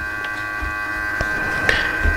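A steady electrical hum with a high, even whine, broken by a few faint clicks.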